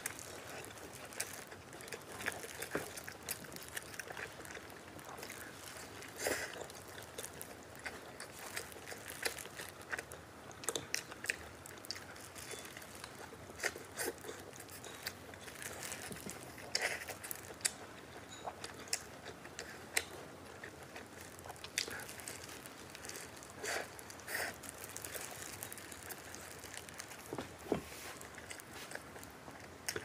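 Eating sounds: bites into a shaobing (baked flatbread) sandwich filled with egg, sausage and pork tenderloin, then chewing, heard as irregular sharp clicks and crackles.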